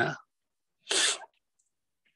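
A man's single short, sharp breath about a second in, a burst of breathy noise with no voice in it, taken into a close microphone between sentences.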